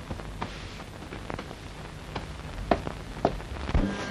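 Faint hiss with a few light, sharp knocks, the last three about half a second apart.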